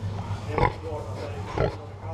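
A pig grunting twice, about a second apart, over a steady low hum.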